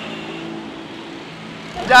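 Street traffic noise: a steady low hum of vehicle engines with faint road haze. A man's voice starts near the end.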